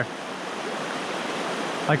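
River rapids running over rocks: a steady rushing of white water, with a voice coming in right at the end.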